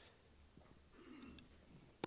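Near silence: room tone, with a faint brief sound about a second in.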